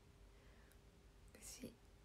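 Near silence: room tone with a faint steady hum, and one brief soft noise about one and a half seconds in.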